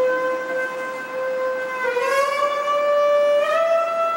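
A clarinet playing solo. It holds one long high note, then scoops up into a higher note about two seconds in and rises again to a higher held note near the end, bending the pitch between notes.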